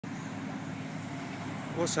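Passenger hovercraft running steadily as it approaches over the water: a low hum of its engines and propellers, with several steady tones.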